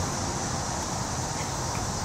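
Steady outdoor background noise: a low rumble under a constant high hiss, with no distinct events.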